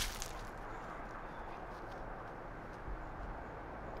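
Faint, steady outdoor background noise with a low rumble and no distinct event standing out.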